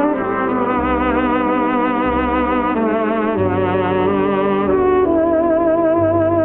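Instrumental 1930s–40s swing band music led by brass, trumpets and trombones holding notes with vibrato over a steady bass line.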